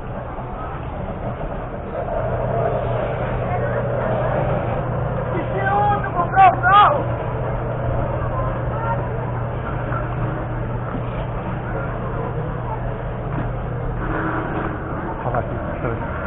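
Open-air market street ambience: background voices over a steady low hum. A short, loud, rising-and-falling call of a voice comes about six seconds in.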